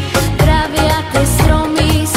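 Background music: a song with a steady beat and a strong bass line.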